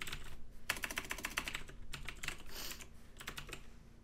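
Typing on a computer keyboard: a quick run of key clicks about a second in, then a few slower, scattered keystrokes.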